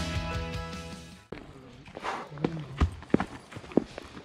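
Background music fading out in the first second and stopping abruptly, then footsteps on a dry dirt path: irregular sharp steps over a faint outdoor hiss.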